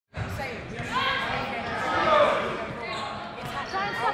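Players shouting as a dodgeball game opens, with balls thudding and bouncing on a hardwood sports-hall floor, several sharp impacts through the shouts.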